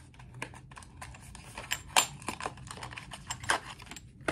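Irregular small clicks and taps of a small cardboard box being handled and opened by hand, with a few sharper clicks about two seconds in and again near the end.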